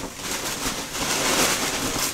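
Red tissue paper rustling and crinkling as it is wrapped around a gift and pushed into a paper gift bag. It is a continuous run of crackly paper noise.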